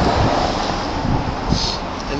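Street traffic passing, with wind rumbling on the microphone.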